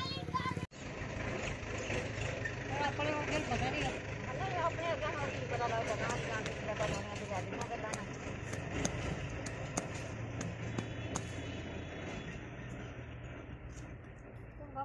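A vehicle engine running with a steady low hum, while people talk in the background. Scattered sharp clicks come in the second half. The sound cuts out briefly less than a second in.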